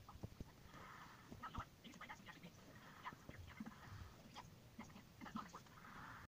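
Faint, irregular small sticky clicks of soft shampoo-and-salt slime being squished and smeared with fingers on a flat surface.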